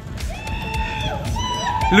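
Skaters whooping and cheering: a high, held call about a third of a second in and another near the end, over a steady low rumble.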